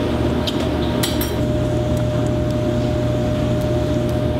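Steady low hum of kitchen ventilation with a thin steady whine above it, and a few light clinks of a utensil against dishware about half a second and about a second in.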